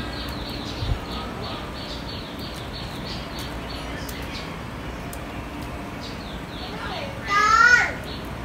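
A child's voice calls out once, briefly and loudly, near the end, over a faint, rapid chirping of about four chirps a second and steady outdoor background.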